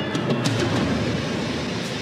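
Film soundtrack playing back: a steady, dense rumbling clatter with a few sharp clicks in the first half second.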